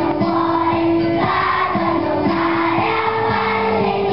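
A choir of elementary-school children singing an Italian Christmas song together, moving through a run of sustained notes without pause.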